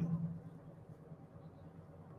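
Faint, steady low rumble and hum of a moving vehicle's cabin, carried over a live remote audio feed.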